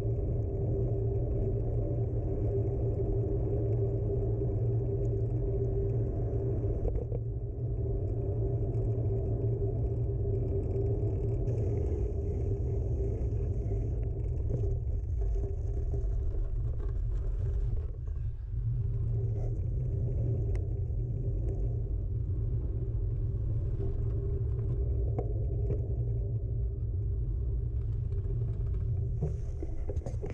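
Steady low rumble of wind on the microphone and tyres rolling along a path as a bicycle is ridden, with a faint steady hum under it. The rumble dies away at the end as the ride comes to a stop.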